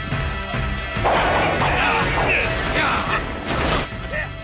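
Dramatic background music under crashing battle sound effects, with wavering shouts or cries over them from about a second in.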